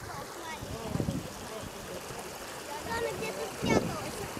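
Water running steadily over rocks in a shallow artificial cascade stream, with short bursts of voices over it, the loudest near the end.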